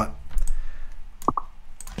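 A few sharp clicks of a computer mouse button as program blocks are dragged and dropped into place.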